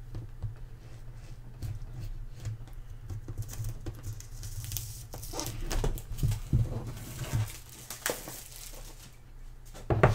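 Hands handling a cardboard smartphone box and loose plastic wrap: scattered light taps, scrapes and crinkles, busiest in the middle, over a steady low hum.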